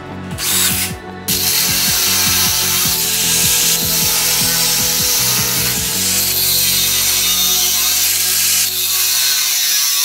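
A cordless drill boring into a metal frame tube, in short bursts and then running steadily. About six seconds in, an angle grinder with a cutting disc takes over, cutting metal with a steady high grinding noise.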